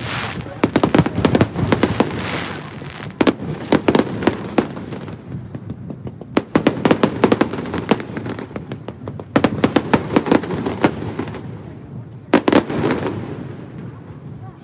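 Aerial fireworks bursting in the sky: volleys of rapid bangs and crackles come every two to three seconds, with a last short volley near the end, and a rumbling wash of echo between them.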